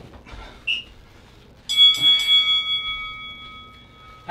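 A workout round-timer bell rings about two seconds in: a few quick strikes, then a long ring that fades slowly. It marks the halfway point of the round.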